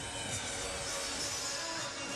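Steady arena background noise, an even crowd-and-hall hubbub, with faint music under it.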